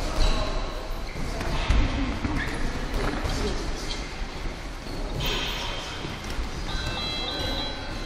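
Boxing sparring: scattered thuds of gloved punches and footwork on the ring canvas over a background of voices in the hall. A faint steady high tone runs through the last few seconds.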